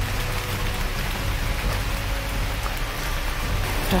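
Steady rushing hiss of a shallow stream running over rocks.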